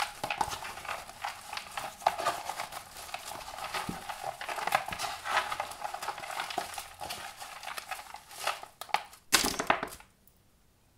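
Hands rummaging and shuffling through a box of paper stickers: a steady rustle with many small clicks. Near the end comes a louder, brief rush as the stickers are tipped out onto the board.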